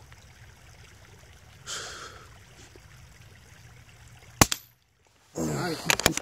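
A single rifle shot about four and a half seconds in: one sharp crack, after which the recording drops out to silence for a moment.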